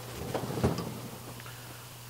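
Pull-out freezer drawer of a refrigerator being handled as a bowl goes in: a click and a few light knocks and rustles in the first second, then quiet room noise.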